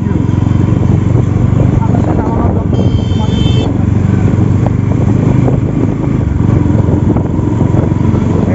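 Bajaj Pulsar NS200's single-cylinder engine running steadily as the motorcycle rides slowly, with a brief high-pitched beep about three seconds in.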